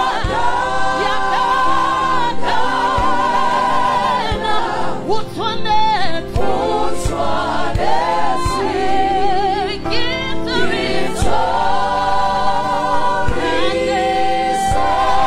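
Gospel praise team of several men and women singing together with wavering vibrato, backed by a live band, with a kick drum striking every second or two.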